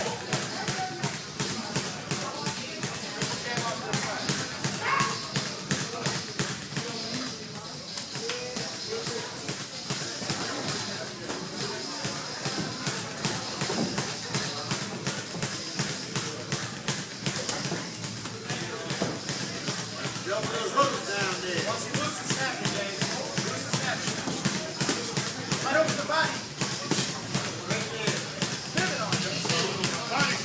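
Boxing gym during sparring: repeated taps and thuds of gloves and footwork on the ring canvas, over background voices and music.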